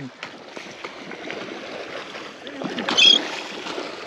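Steady noise of water and wind around a small fishing boat on a river, with one brief sharper sound about three seconds in.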